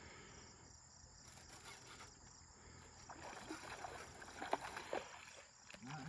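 Faint splashing and sloshing of water as a small hooked flathead catfish is reeled in to the bank, a few irregular splashes clustering in the second half, with crickets chirping steadily behind.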